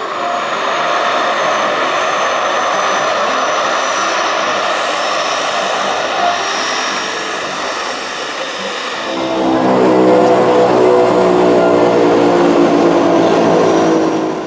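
De Havilland Canada DHC-6 Twin Otter floatplane's twin turboprop engines and propellers running as it skims across the water on its floats. At first a broad rushing sound; about nine seconds in, a louder, steadier low drone takes over.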